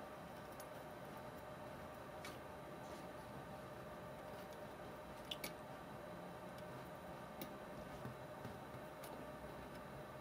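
Quiet soldering of a replacement IC's pins on a TV circuit board: a faint steady hum with a few small ticks as the soldering iron tip and solder touch the joints, the clearest about five seconds in.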